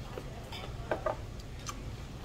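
A man chewing a mouthful of crunchy Chinese broccoli, with a few faint clicks, over a steady low room hum.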